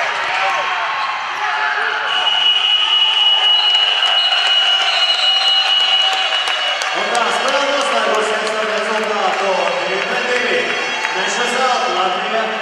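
Crowd noise in an indoor futsal hall, with a long high-pitched signal tone that lasts about four seconds, a little after the start. From about halfway on, loud crowd voices, chanting or shouting, take over.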